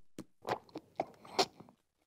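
A baby chewing and biting on a cardboard record album sleeve: about five short, separate crunching bites.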